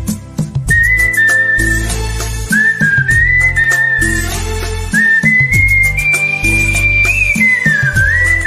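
A man whistling a Bollywood song melody through puckered lips, a clear pure tone in short phrases, over a recorded backing track with bass and drums. The whistle comes in about a second in, and near the end it holds a long high note that slides down.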